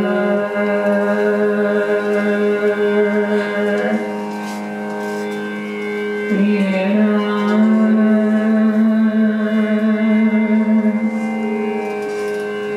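A female Hindustani classical vocalist sings raag Bairagi Bhairav in long held notes that glide between pitches, with a harmonium sustaining beneath her.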